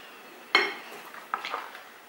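A metal spoon clinking against the dishes while flour is spooned from a plate into the cake batter: one ringing clink about half a second in, then two lighter clinks near the middle.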